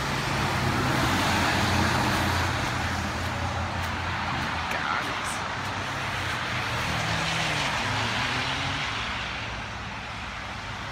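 Road traffic passing on a wet, slushy road: tyre hiss with a low engine rumble, swelling about two seconds in and again near the end.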